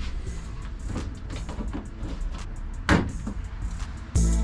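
Small clicks and scrapes of hand tools prying plastic push clips out of a van's interior wall panel, with one sharper click about three seconds in, over a steady low rumble.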